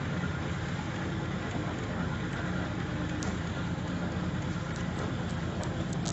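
A farm tractor's engine running steadily as it drives along, with a fast, even pulse. A few faint clicks come near the end.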